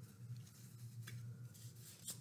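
Near silence: room tone with a low steady hum and a few faint, light ticks.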